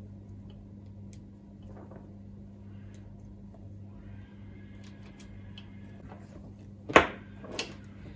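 Hands working wires and white cable ties into a 3D-printed plastic dipole centre piece: faint rustling and small ticks over a steady low hum, with one sharp click about seven seconds in and a smaller one just after.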